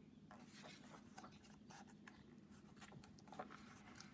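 Faint rustle and soft ticks of a picture book's paper page being turned, mostly in the first two seconds.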